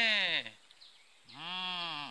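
Bleating livestock: one quavering bleat ends about half a second in, and another starts about a second and a quarter in and runs on past the end.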